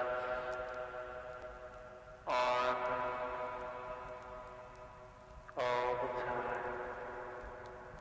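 Ambient electronic music: a sustained synthesizer chord rings out, then two more are struck about two and five and a half seconds in, each starting with a bright attack and fading slowly.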